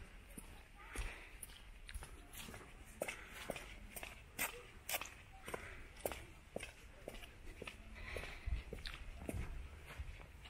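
Footsteps of someone walking at an even pace, about two steps a second, as a short sharp tap with each step, with faint distant voices behind.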